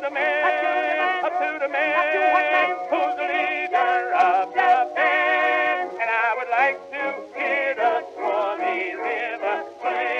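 Acoustic-era 78 rpm Victor record of a ragtime song: a male vocal duet with a small orchestra. The sound is thin and boxy, lacking bass and the highest treble, with wavering melody lines throughout.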